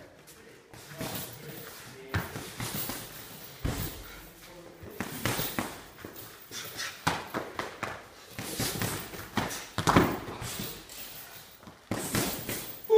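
Punches and kicks landing in light kickboxing sparring: irregular slaps and thuds of gloves, focus mitts and padded shins striking, with feet shuffling on the mats. The loudest hit comes about ten seconds in.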